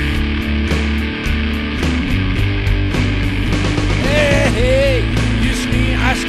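Rock music in an instrumental stretch between sung lines: a steady bass and drum groove, with a short high sliding line about four seconds in.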